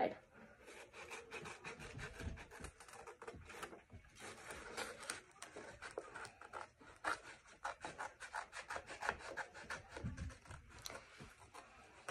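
Sheet of paper being cut with scissors and then handled and folded: faint rustling and crinkling made of many small irregular crackles.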